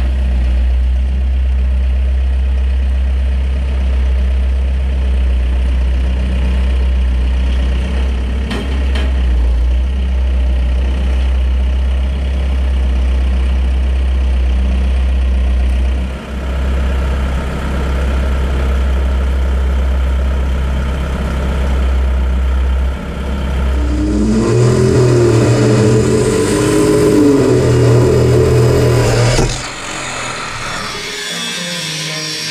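An engine idling steadily with a deep, loud hum. About 24 seconds in it gives way to music.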